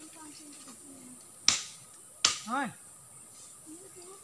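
Two sharp cracks of dry wood, about three-quarters of a second apart, as firewood is broken or cut in the undergrowth.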